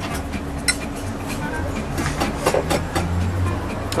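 Utensils and dishes clinking at a cooking station, several sharp clinks over a low steady rumble, with faint background music.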